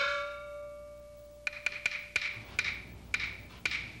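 Chinese opera percussion accompaniment. A struck gong rings on, rising slightly in pitch as it settles and fading over about a second and a half. Then a wooden clapper or wood block clacks about seven times at an uneven pace.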